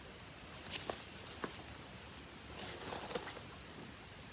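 Faint rustling with a few light clicks and taps, the sound of craft items and a project bag being handled.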